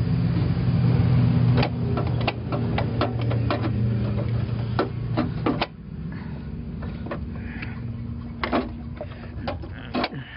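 Socket ratchet clicking in quick, irregular strokes as a motor mount bracket bolt is worked loose, over a steady low hum that stops about halfway through.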